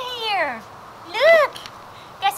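Chocolate Labrador puppy whining: a long, high call that falls away, then a shorter arched whine about a second in.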